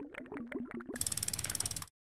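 Animation sound effect of ratchet-like clicking: a few separate clicks, then from about a second in a faster, brighter run of clicks that stops just before the end.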